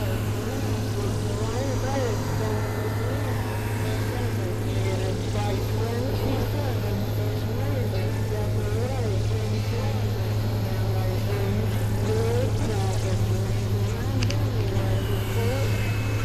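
Experimental electronic drone music: a steady, loud low synthesizer drone under warbling tones that glide up and down, over a dense noisy texture.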